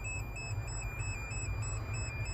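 Tipper body's hydraulic unit running with a steady low hum, heard inside the truck's cab, with a faint high tone over it that steps up and down evenly.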